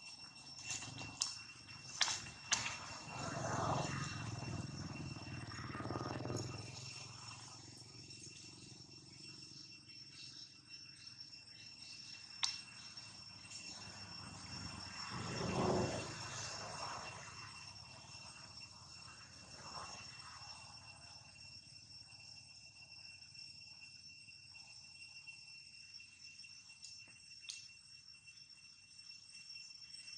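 Insects buzzing steadily at two high pitches, with a few sharp clicks near the start and two louder swells of low noise, a longer one a few seconds in and a shorter one about halfway through.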